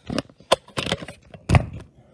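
A quick run of clattering knocks and rattles, as of hard plastic pieces or the camera being handled, ending in a heavier low thump about one and a half seconds in.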